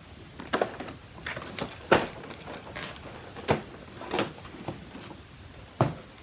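Cardboard and plastic packaging being handled and set down: a string of separate taps, clicks and light knocks, about eight in all, the sharpest near two seconds in and just before the end.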